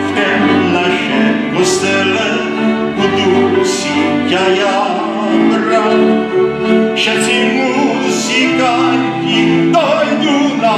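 Moravian cimbalom band playing a Horňácko folk tune on fiddles and cimbalom, with a man's voice singing over the strings.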